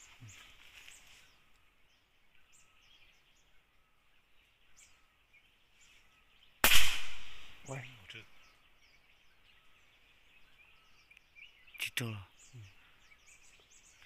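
An air rifle fires once, a sharp crack about seven seconds in that dies away within a second; a second, weaker crack comes about five seconds later. Small birds chirp faintly in the background.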